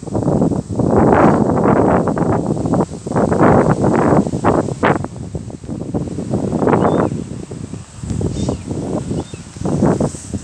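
Wind buffeting the phone's microphone in strong gusts, with a deep rumbling noise that swells and dips, easing briefly about three seconds in and again near eight seconds.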